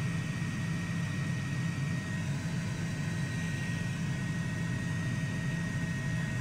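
A steady, low engine-like drone with hiss between fireground radio transmissions, plus a faint steady high tone.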